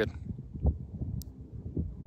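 Wind buffeting the microphone outdoors: an uneven low rumble, with a soft knock about two-thirds of a second in.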